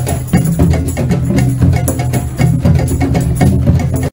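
Drum circle: many hand drums, djembes among them, played together in a fast, busy rhythm with strong low tones under sharp strokes.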